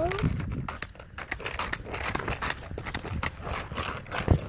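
Quad roller skate wheels rolling over rough asphalt: a rapid, irregular clatter of small clicks and crackles.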